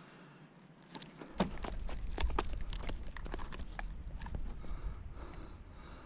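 Close handling noise as a caught redfish is held and moved: a run of small clicks, taps and rubs over a low rumble. It starts about a second in and thins out near the end.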